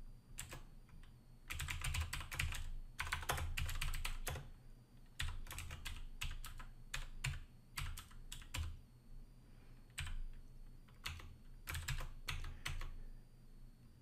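Typing on a computer keyboard: quick runs of keystrokes in the first few seconds, then scattered single keystrokes with short pauses between them.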